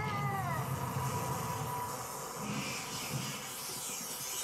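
Cartoon soundtrack sound effects: a short wailing cry that bends down in pitch in the first half-second, then a thin held whine over a low rumble that fades after about two seconds.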